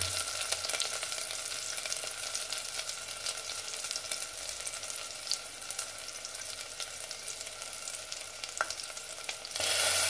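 Whole tomatoes, shallots and green chillies sizzling in a pressure cooker: a steady hiss with fine crackles. Near the end it grows louder as a slotted spoon stirs them.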